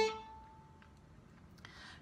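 Violin's long A note ending as the bow stops, the string ringing on and fading away over about a second, followed by near silence.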